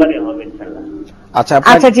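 A person's voice holding a steady hum tails off about a second in, and speech starts again shortly after.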